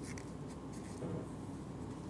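A quiet pause between speakers: faint steady low hum and room noise, with a slight brief rise about a second in.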